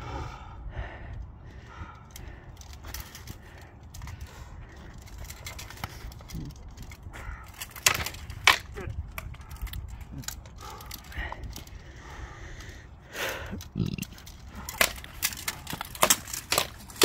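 Practice longsword blades striking each other during sparring: two sharp clacks about halfway through, and a quick run of clacks near the end.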